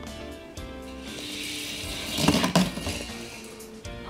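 Background music throughout. About a second in, a rattling hiss builds from a die-cast Hot Wheels car rolling down the plastic track, with a louder burst of sound about two and a half seconds in.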